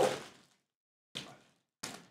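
Two short, quiet rustles of a plastic zip-top bag being handled, about a second in and again near the end, as a sauced chicken wing is taken out of it.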